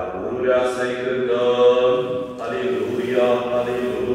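Orthodox church chant of an akathist: voices singing long held notes in slow phrases, with a short break between two phrases about two and a half seconds in.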